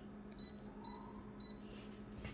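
Photocopier touchscreen giving three short, high key-press beeps about half a second apart as its settings are entered and closed, over a faint steady hum.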